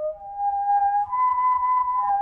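Corrugated plastic whirled tube (a whirly) swung in a circle, sounding pure, flute-like overtone notes. The pitch steps up from one steady note to a higher one about a second in.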